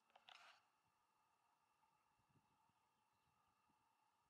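Near silence: quiet outdoor ambience, with one short, faint rustling noise about a quarter second in.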